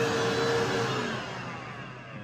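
Bissell portable carpet and upholstery cleaner's motor running, then winding down with a falling whine and fading out over the second half.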